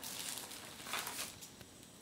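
Plastic carrier bag rustling and crinkling as hands dig into it to take out a figurine, in two short bursts, the second about a second in, then dying away.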